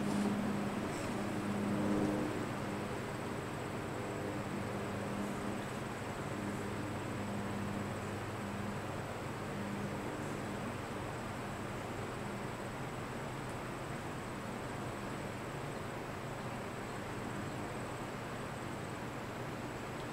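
General Electric W-26 window box fan coasting down after being switched off. The air rush from its blades sinks slowly, and a low hum fades out over the first several seconds as the blades wind down. No bearing noise can be made out: the bearings seem pretty content still.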